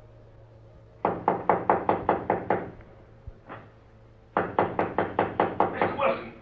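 Rapid knocking on a cabin door as a radio-drama sound effect: two bursts of about eight or nine quick knocks, about five a second, with a pause and a faint knock or two between them. A low steady hum from the old recording lies underneath.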